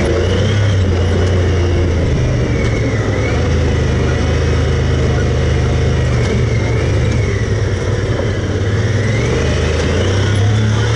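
Side-by-side UTV's engine running under way on a rough dirt trail, a steady low drone heard from the cab, with a faint high whine that rises and falls a few times as the throttle changes.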